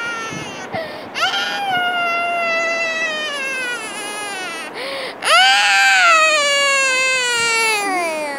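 A child's high-pitched voice letting out two long wails, each sliding slowly down in pitch. The second wail is louder and starts about five seconds in.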